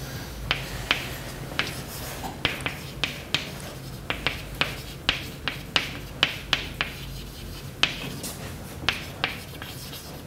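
Chalk writing on a blackboard: sharp, irregular taps and short scratches of the chalk as letters are formed, about two a second.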